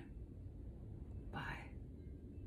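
A woman's brief whisper, a short breathy sound about halfway through, over a faint low room rumble.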